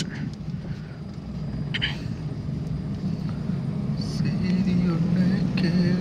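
Car cabin sound while driving on a wet road in rain: a steady low engine and tyre drone, with rain on the car's body and glass.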